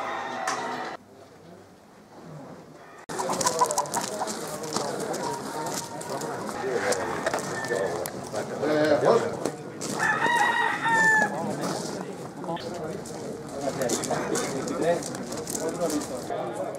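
Many gamecocks crowing over one another in a dense, busy din. It begins about three seconds in, after a short stretch of music and a quieter gap.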